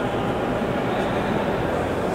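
Steady background din of a large exhibition hall: an even rushing noise with no distinct events.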